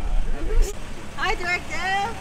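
Several people's voices talking and calling out over one another, the clearest near the end, with a steady low rumble underneath.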